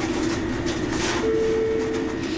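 Busy fast-food kitchen background noise starts suddenly: a steady, dense hiss and rumble with a low hum. A single held tone joins about halfway through.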